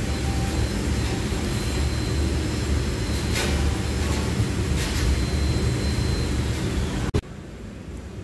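Steady low rumble of an idling pickup truck engine, with a couple of faint clicks; it cuts off abruptly about seven seconds in.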